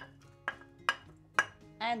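A kitchen utensil knocking against the rim of a non-stick cooking pot, four sharp knocks about half a second apart, as chopped onion is shaken off into the water.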